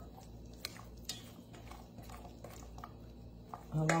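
Silicone spatula stirring a mayonnaise-and-sour-cream pasta salad in a stainless steel bowl: soft, wet squishing with a few light clicks and scrapes against the bowl.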